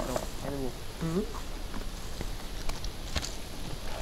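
A man's voice for about the first second, then low background noise with a few faint clicks.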